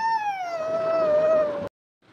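A toddler's long wailing cry: one held note that slides slowly down in pitch and then cuts off abruptly near the end.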